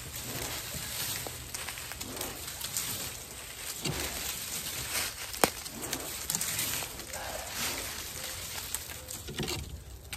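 A thin dead sapling being shaken and yanked back and forth by hand: its twigs and branches rattle and rustle, with small woody clicks and one sharp crack about five and a half seconds in. The trunk does not break.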